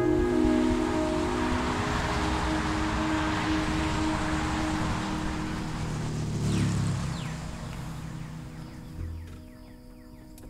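A brass ensemble's closing chord cuts off, leaving a held low tone under a wash of noise that fades away over several seconds. Faint percussion ticks start near the end.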